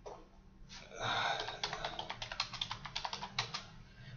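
Typing on a computer keyboard: a quick, irregular run of keystrokes starting about a second in and stopping shortly before the end, as a search term is typed.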